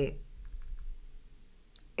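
A few faint, short clicks over a low steady hum: a small cluster about half a second in and a single sharper click near the end.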